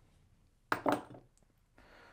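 Plywood test blocks being handled on a wooden workbench: one sharp knock about three-quarters of a second in, then a few light clatters.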